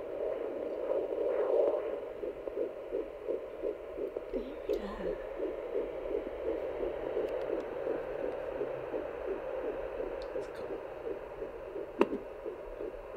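Handheld fetal Doppler's speaker playing a fast, rhythmic heartbeat pulse picked up through the pregnant belly. It is faster than the mother's pulse, so the midwife takes it for the baby's heartbeat rather than the mother's.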